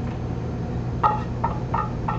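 Stir-fried vegetables being pushed out of an aluminium saucepan onto a plate with a wooden spatula: three short light scrapes or taps about a second in, over a steady low hum of kitchen equipment.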